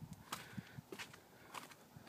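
Faint footsteps: a few soft, irregular steps and taps.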